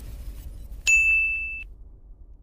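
Logo-intro sound effect: a single bright ding about a second in, one high steady tone held for under a second and cut off sharply, over the fading tail of a low rumble.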